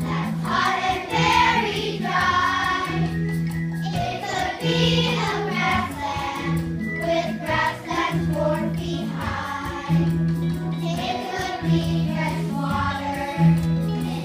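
A group of children singing a song together to a musical accompaniment, with a low bass note repeating about once a second.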